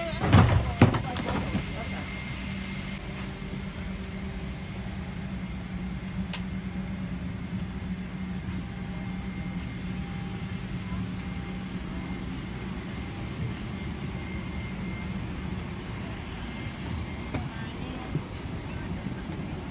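Steady hum and air-conditioning rush inside a parked Airbus A330 cabin during boarding, with the low voices of passengers in the background. A loud bump and rustle comes just after the start.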